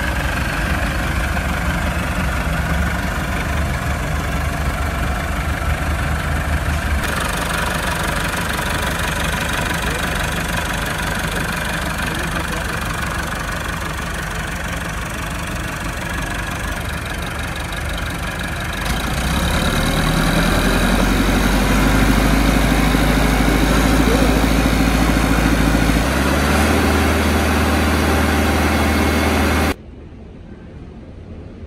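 Massey Ferguson 385 tractor's four-cylinder diesel engine idling, a steady low drone. About two-thirds of the way through it grows louder, and it cuts off suddenly just before the end.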